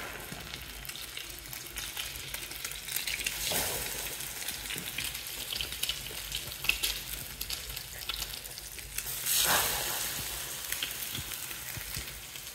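Egg-soaked bread slices frying in oil in a non-stick frying pan as French toast, a steady sizzle with fine crackling. The sizzle swells louder twice, about three and a half seconds in and near the end.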